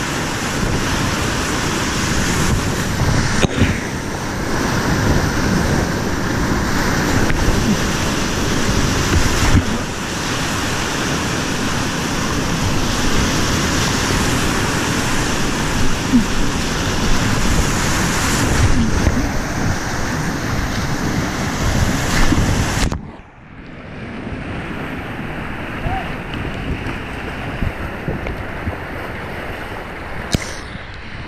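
Whitewater rapids rushing and splashing loudly right around a kayak, with water and wind buffeting the microphone. About three-quarters of the way through the sound drops suddenly and turns duller, then carries on more quietly.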